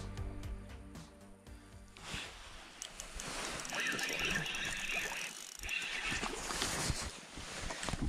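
Background music fading out over the first two seconds, then the handling sounds of a crappie being reeled in on a spinning reel and splashing at the surface as it is lifted from the water, with a brief high chirping sound about four seconds in.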